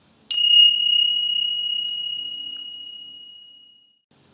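A single high-pitched chime struck once, a quarter second in, ringing clearly and fading away slowly over about three and a half seconds.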